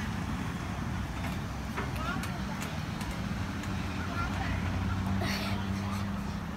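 Low, steady engine hum of a motor vehicle that grows louder over the second half, with a few faint voices.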